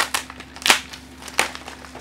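Paper gift packaging being torn open and handled, rustling and crinkling, with sharper crackles at the start, about 0.7 s in and about 1.4 s in.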